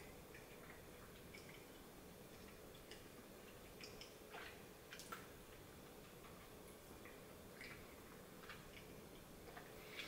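Near silence: faint steady room hum with scattered small clicks and mouth sounds from sucking a hard-candy Chupa Chups lollipop.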